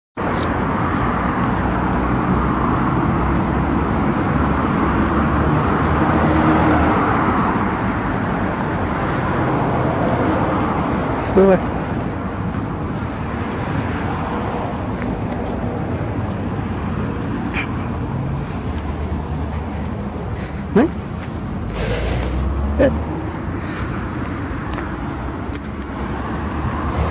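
Road traffic on a city street: a steady wash of passing cars, loudest in the first several seconds as vehicles go by, with a deeper rumble of a vehicle passing about two-thirds of the way through.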